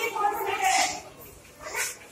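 A voice speaking for about a second, then a brief lull and a short vocal sound near the end.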